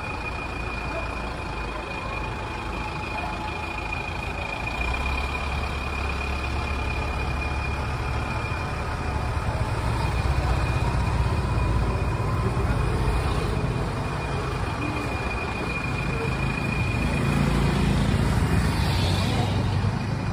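Street traffic: motor vehicle engines running, with a motorcycle engine growing louder around the middle as it passes close by. A steady high tone sits over it and fades out near the end.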